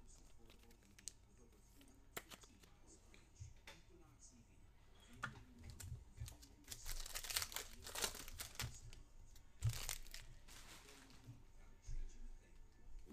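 A trading-card pack wrapper being torn open and crinkled: a few light clicks at first, then a busier stretch of tearing and rustling in the second half as the pack is opened and the cards are handled.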